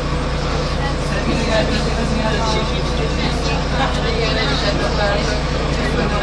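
City bus engine running with a steady low drone, heard from inside the passenger cabin, with passengers talking over it.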